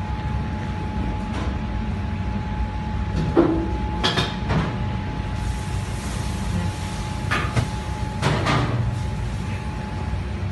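Steady low machinery hum with a faint constant whine over it, broken by a few short knocks and rustles: about five, the clearest around four seconds in and again near eight and a half seconds.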